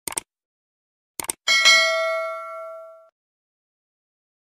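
Subscribe-button animation sound effect: a pair of quick clicks, two more clicks about a second later, then a bright notification-bell ding that rings out and fades over about a second and a half.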